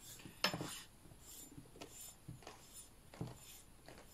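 Brass pipes handled while synthetic string is drawn through them: a sharp metallic click about half a second in, then a few fainter clinks and rubbing strokes of string against pipe.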